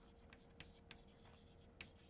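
Chalk writing on a chalkboard: a few faint taps and scratches of the chalk as a word is written, over a faint steady hum.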